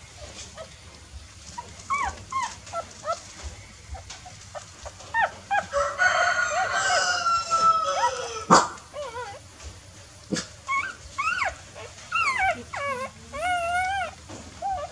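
Newborn puppies whimpering and squeaking in short, high calls that rise and fall in pitch. Around the middle, several cry at once for a couple of seconds, with a sharp click just after.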